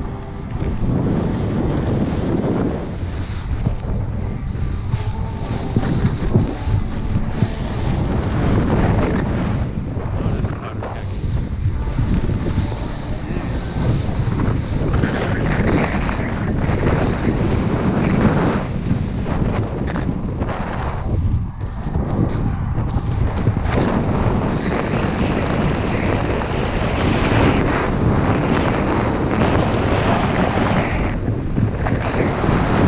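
Wind rushing over a GoPro action camera's microphone while descending a snowy slope, with the hiss of sliding on snow underneath. The noise is continuous and swells and dips.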